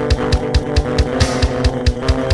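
Heavy metal music: sustained, heavily distorted electric guitar chords over a steady, driving drum beat, with the bass drum landing about four times a second.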